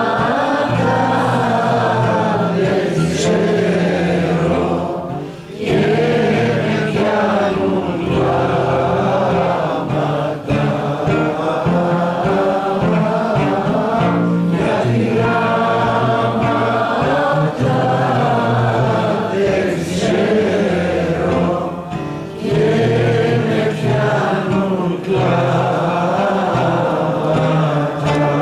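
Live song: voices singing together over a strummed acoustic guitar, the melody held in long sung notes.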